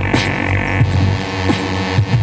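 Live electronic hip-hop music played on an Akai keyboard: a deep, throbbing synth bass line under pitched notes, with percussive hits about every half second.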